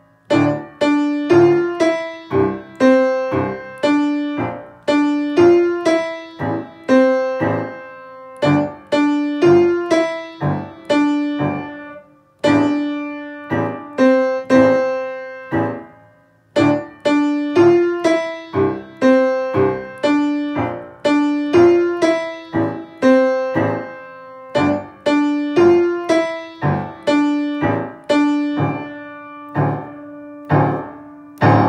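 Acoustic piano played with the right hand alone: a simple single-note melody picked out note by note in short repeating phrases, with two brief pauses about halfway through.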